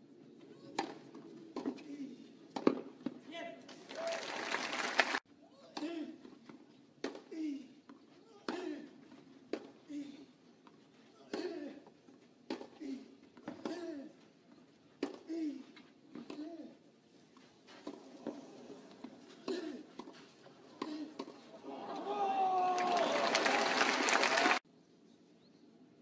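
Tennis rally on a clay court: racket strikes on the ball about every second and a half, most followed by a player's short grunt. There is a burst of crowd applause about four seconds in that is cut off abruptly, and cheering and applause again for the last two seconds as the point ends.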